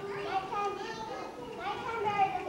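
Young children's high voices in chorus, held notes moving from one to the next every few tenths of a second.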